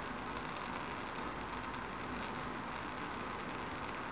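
Bunsen burner flame running with a steady, even hiss.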